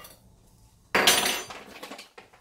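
One sharp clink of kitchenware about a second in, ringing briefly and fading over about half a second: a measuring cup knocking against a glass mixing bowl as flour is tipped in.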